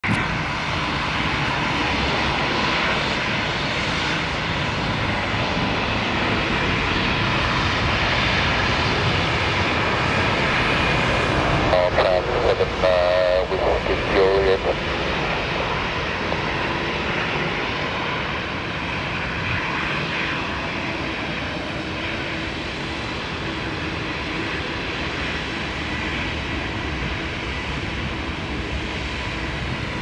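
Airbus A320neo's CFM LEAP-1A turbofans running steadily at low taxi thrust, a continuous jet rumble with a thin, high whine. The sound eases slightly in the second half.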